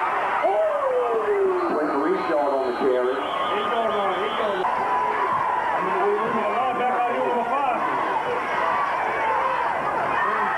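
Spectators' voices: several people talking and calling out over one another, the words indistinct.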